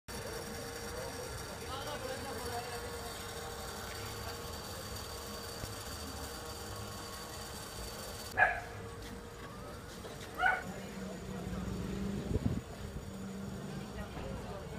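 Street ambience with bystanders' voices and traffic. After a change in the background, two short, loud pitched calls come about two seconds apart, then a steady low engine hum starts, with a few low thumps near the end.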